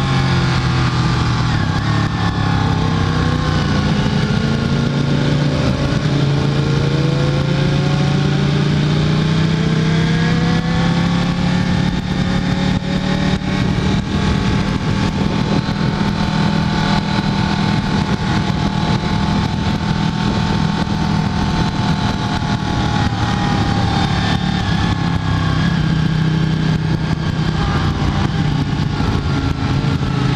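Ducati 1299 Panigale S's V-twin engine running at steady, moderate revs under light throttle, its pitch gliding gently up and down with no hard revving.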